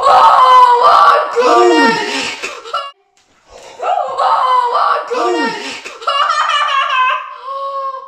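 Excited wordless shrieks and exclamations from a man and a boy. The same burst is heard twice, with a short gap between, and it ends in a long, high held cry.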